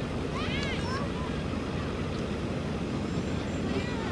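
Steady low wind rumble on the microphone at an outdoor soccer field, with distant high-pitched shouts from players and spectators about half a second in and again near the end.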